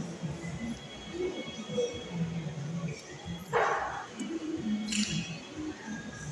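A man chewing a big bite of a chicken tortilla wrap, with a few short closed-mouth "mm" hums and a short breathy noise about halfway through.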